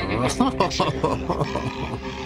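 A gravelly, growling male voice over the song's backing music, with sharp, rough peaks.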